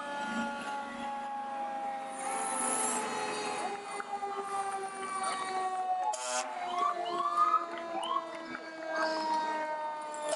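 Fire engine sirens sounding as a line of fire trucks passes: a long siren tone slowly falls in pitch throughout. About six seconds in comes a short horn blast, followed by several quick rising siren whoops.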